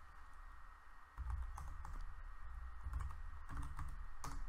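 Quiet typing on a computer keyboard: a few scattered keystrokes over a low hum that gets louder about a second in.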